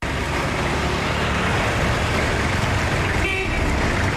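Street traffic noise with vehicle engines running, and a car horn sounding briefly about three seconds in.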